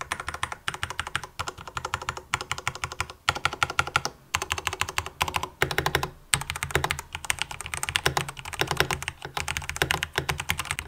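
Fast, continuous typing on a Ducky Project D Tinker 65 mechanical keyboard: a rapid stream of key clicks, broken by a few short pauses.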